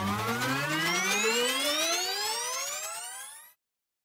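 Synthesized riser sound effect: a rich tone gliding steadily upward in pitch, cutting off suddenly about three and a half seconds in.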